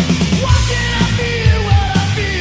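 Rock band recording: a lead vocal over guitars and a steady drum beat.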